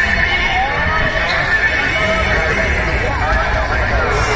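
Dense crowd babble: many voices talking over one another in a steady, continuous din.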